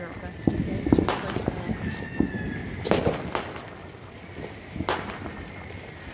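Fireworks and firecrackers going off around the neighbourhood: a string of sharp bangs at irregular intervals, the loudest about a second in, near three seconds and near five seconds.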